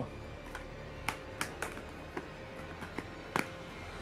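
Clear plastic DVD cases being handled and opened, giving a scattering of short, sharp plastic clicks, the loudest a little past three seconds in, over faint background music.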